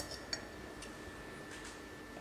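A few faint light clicks of glass on glass as the upper glass funnel of a Cona vacuum coffee maker is lowered onto its lower glass bowl.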